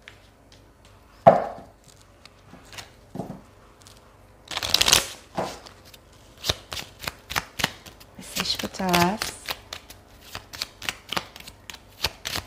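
A deck of tarot cards being shuffled by hand: a loud riffling burst about five seconds in, then a quick run of light card slaps, several a second, with a single sharp tap near the start.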